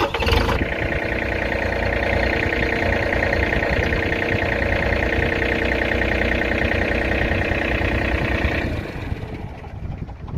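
John Deere 3025E compact tractor's diesel engine running at a raised, steady pitch for about eight seconds, then dropping back near the end.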